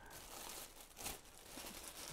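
Faint crinkling of a clear plastic bag as hands pull and twist at it, trying to tear it open.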